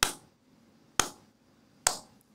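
Three slow hand claps, about a second apart, each sharp and short.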